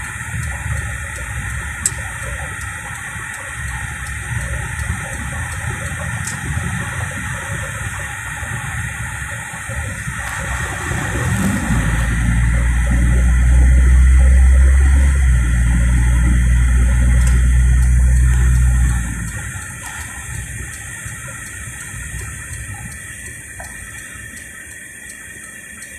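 Car interior noise while driving: engine and tyre rumble heard from inside the cabin. A deep low drone swells about halfway through, holds for around seven seconds as the car speeds up along the open road, then drops back.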